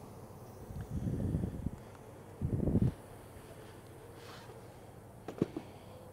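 Low, muffled rustling and bumping noise, twice in the first three seconds, then a couple of faint clicks: handling and movement noise as a wooden pollen trap is moved about.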